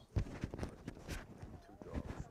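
Handling noise on a clip-on lapel microphone: a string of irregular knocks and rubs as it is fumbled with.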